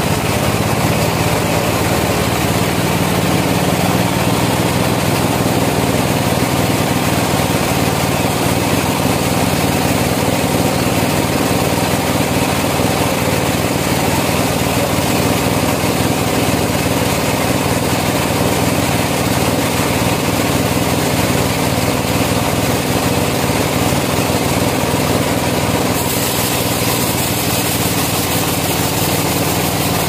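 Bandsaw mill running steadily with a constant engine-like hum. A higher hiss joins near the end.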